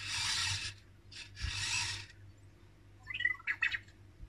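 Anki Vector robot's tread motors whirring in two short bursts as it turns, then a quick run of electronic chirps and beeps from its speaker near the end.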